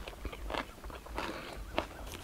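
A person chewing a mouthful of sticky rice dipped in spicy pounded long-bean salad, close to the microphone, with a few crisp crunches.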